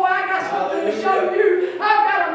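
A woman speaking into a handheld microphone, her voice amplified through the sound system.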